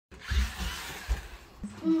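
Small electric motor of a toy remote-control car whirring, with a few low thumps in the first second or so and a child's short "oh" at the end.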